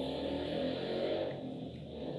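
Steady low hum of background noise, a few steady low tones over a faint hiss, with no sudden events.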